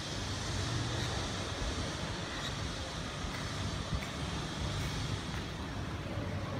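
Steady urban background noise: a low, even hum with hiss, typical of distant road traffic.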